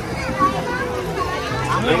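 Children's voices chattering and calling out over one another in a small crowd, with adult voices mixed in and a woman saying a couple of words near the end.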